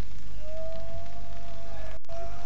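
Amplified stage hum from the band's rig between songs, with a thin, steady feedback tone that comes in about half a second in, rises slightly and then holds.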